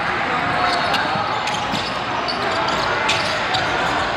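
Basketball gym game sound: a basketball bouncing on the hardwood court over steady crowd and player chatter, with scattered short sharp knocks and squeaks.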